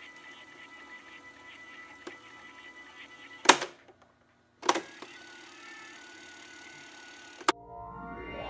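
Cassette tape deck being worked: a small click, then a loud clunk of the transport buttons about three and a half seconds in that cuts the sound dead for a moment, another clunk about a second later, and a final click near the end, over a low hum and tape hiss.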